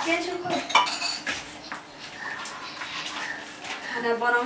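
Metal cooking pots and utensils clinking at a gas stove, with a few sharp clinks in the first second or so, then quieter handling.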